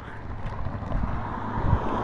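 Wind rumbling on a handheld camera's microphone over a low steady hum.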